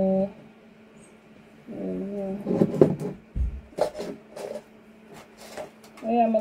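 Sharp clicks and taps with a dull thump, from small plastic pots, lids and tools being handled and set down on a worktable, after a short hummed "mm" from the worker.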